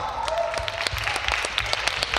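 Audience applauding as a rock song ends, with a held instrument note ringing on under the clapping for about the first second.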